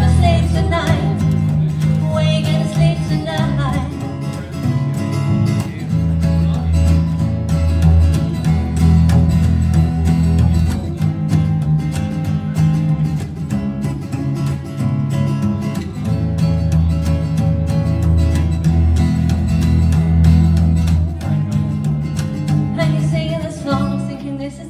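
Live amplified band playing an instrumental break between verses: an upright double bass plucking low notes under a plucked guitar.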